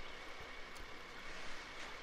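Faint, steady background noise with no distinct events.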